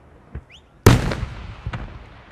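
Aerial firework shells going off: a small pop and a short rising whistle, then a sharp, loud bang just under a second in with a long echoing tail, followed by a couple of further cracks.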